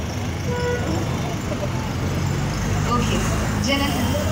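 Low, steady rumble of a motor vehicle engine, growing stronger in the second half, over faint scattered voices of an outdoor crowd.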